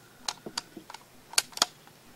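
Handling noise from a phone being fumbled while it records: a string of sharp clicks and taps, the loudest two close together a little past halfway.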